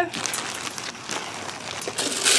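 Birdseed pattering into a plastic coffee-can feeder, with a plastic bag crinkling.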